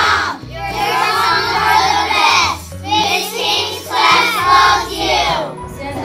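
A group of young children singing together in several short phrases, over background music with a stepping bass line.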